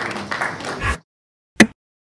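Audience applauding, cutting off suddenly about a second in. After a short silence comes a single short, loud hit.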